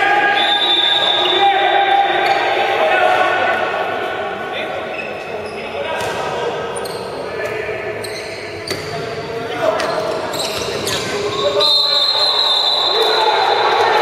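Handball match play in a large, echoing sports hall: a ball thudding on the court floor a few times amid held shouts and voices from players and spectators.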